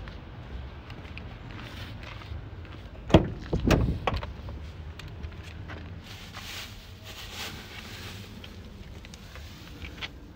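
Ford Transit van's driver's door being opened: a sharp clunk of the latch about three seconds in, followed by a few knocks as the door swings open.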